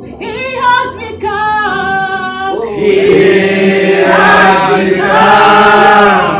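A group of voices singing a worship song together, growing louder and fuller about halfway through.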